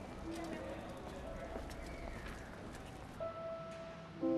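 Horse hooves clip-clopping faintly, with a cart rumbling along. Held notes of music come in about three seconds in.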